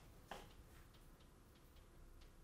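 Near silence: room tone with a low hum and a few faint, irregular ticks.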